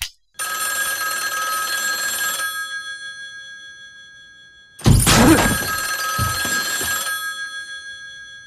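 Telephone bell ringing twice, each ring about two seconds long and then fading away, the second starting about four seconds after the first. A heavier low thump comes with the start of the second ring, the loudest moment.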